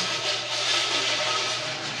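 Coins being shaken in an offering container, a continuous dense rattle with faint ringing, for about two seconds.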